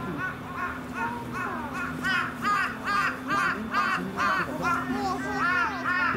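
A crow cawing over and over in a quick series of about two or three calls a second, fainter at first and louder from about two seconds in.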